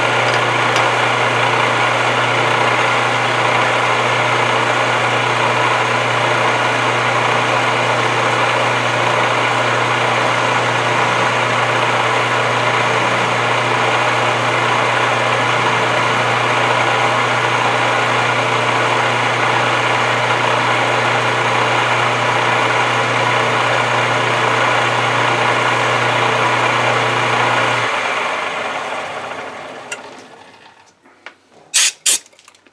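Metal lathe running steadily with a low hum as a carbide-tipped tool takes a turning pass on a small scrap-metal part. Near the end the drive is switched off and the sound fades as the chuck spins down.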